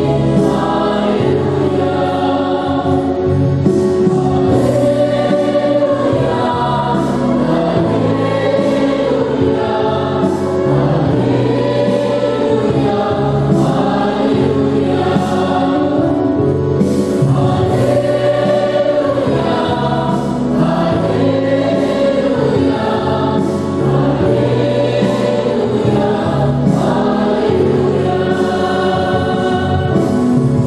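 Church choir singing a hymn over instrumental accompaniment, with held notes and a steady bass line underneath.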